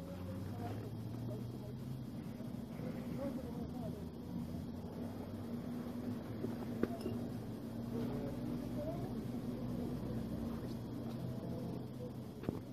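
Indistinct voices murmuring in the background over a steady low drone, with one sharp click about seven seconds in.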